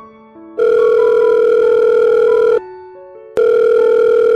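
Telephone ringing: a loud, buzzy, steady ring lasting about two seconds starts about half a second in, and a second ring starts near the end. Soft keyboard music plays underneath.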